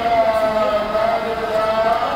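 Sikh devotional chanting of gurbani, voices holding a long sung note that wavers slightly in pitch.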